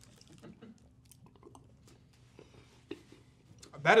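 Faint chewing and mouth sounds with a few small clicks, mostly quiet. A man starts speaking at the very end.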